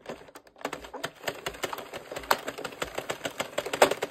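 Addi 46-needle circular knitting machine being cranked round, its needles clicking rapidly and evenly as the yarn carriage passes over them, starting about half a second in. Two louder clacks come about two and a half seconds in and near the end.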